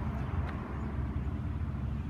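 Freight train cars rolling past at a distance, a steady low rumble with a brief click about half a second in.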